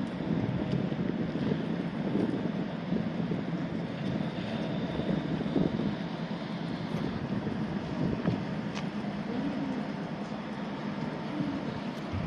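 Wind buffeting the microphone, uneven and strongest low down, over the faint running of a three-car Utsunomiya Lightline tram rolling very slowly, at about 5 km/h, on a track-entry test.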